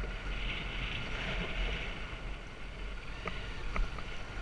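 Off-road motorcycle engine running steadily while riding a bumpy dirt trail, mixed with wind noise on the helmet-mounted microphone. Two sharp knocks come near the end, about half a second apart.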